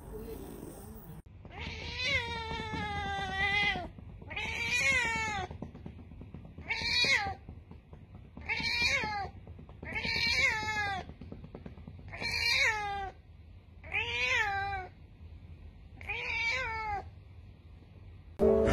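White domestic cat meowing loudly and repeatedly: eight calls. The first is drawn out, the rest shorter and about two seconds apart, each falling in pitch at the end.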